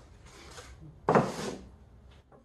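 A thin bentwood box of bent wood set down on a wooden workbench: a single hollow wooden knock about a second in, after faint handling and rubbing of the wood.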